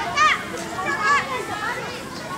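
Children's voices outdoors: kids chattering and calling out as they play, with a brief high-pitched shout about a quarter second in.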